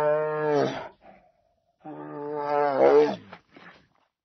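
Cat moaning: two long, low yowls, the first fading out about a second in and the second starting near the two-second mark, each bending down in pitch as it ends.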